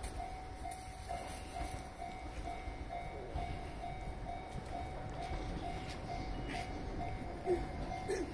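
Japanese level-crossing warning bell ringing in an even, repeating clang of about two strikes a second, signalling an approaching train, with a low rumble underneath.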